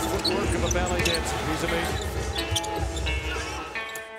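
A basketball dribbled on a hardwood court during game action, mixed with arena and broadcast sound. The sound fades out near the end.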